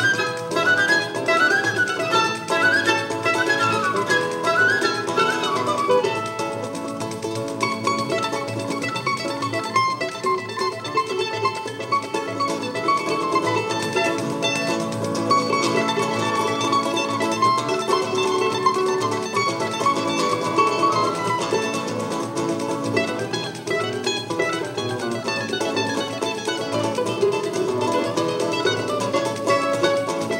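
Live choro ensemble playing an upbeat tune: flute and bandolim over a seven-string guitar and pandeiro. Quick rising and falling melodic runs come in the first several seconds and again a little before the end.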